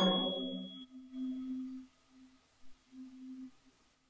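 Chamber ensemble music: a loud held chord dies away in the first second, leaving a faint single low tone that is held, then breaks off and returns in short pieces. A thin high tone fades out early.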